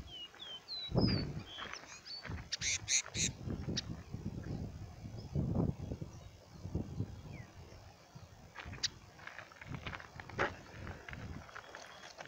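Caged caboclinho (a Sporophila seedeater) singing: a run of short whistled notes climbing in pitch over the first second and a half, a burst of sharper high notes about three seconds in, and scattered notes later, over a low rumbling background.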